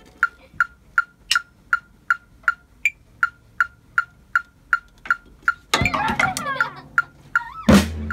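Metronome app clicking steadily at 80 bpm, about 2.7 short clicks a second (eighth notes). From about six seconds in, louder backing music comes in, and near the end a loud drum-kit hit starts the playing.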